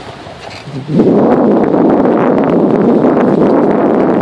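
Off-road vehicle driving along a dirt trail, with a loud, steady rush of wind and running noise on the microphone that sets in about a second in.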